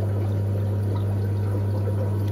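Aquarium filtration running: a steady low hum with water trickling.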